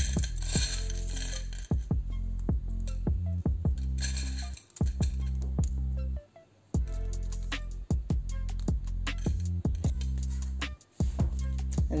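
Dried garlic flakes clicking and rustling against a ceramic plate as fingers stir and lift them, a crisp sound that shows they are completely dry. Background music with a steady bass runs underneath.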